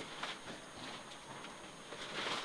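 Mitsubishi Lancer Evo 9 rally car running over a rough gravel road, heard from inside the car as faint, steady road noise with scattered knocks from stones and bumps.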